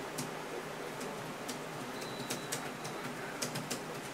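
About ten light, sharp clicks at irregular spacing over a steady low hiss, with one brief thin high tone about halfway through.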